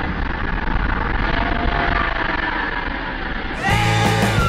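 Pyrotechnic fireball at a water stunt show: a steady rumbling roar just after the blast, mixed with a jet ski's engine, water spray and show music. Near the end it cuts abruptly to a rock music track.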